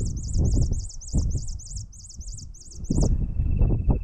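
Carbon sierra-finch (yal carbonero) singing in display flight: a fast run of high, wavering notes, about four a second, that stops suddenly about three seconds in. Wind buffets the microphone throughout.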